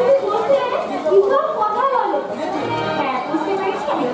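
Speech: stage dialogue, with chatter behind it.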